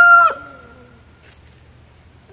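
The long, held final note of a rooster's crow, loud and steady, falling in pitch and breaking off about a quarter second in.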